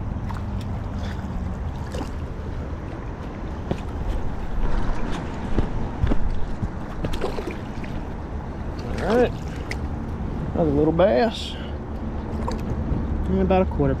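Steady low rush of flowing river water, with a few small clicks and knocks scattered through it, while a hooked smallmouth bass is fought in the current.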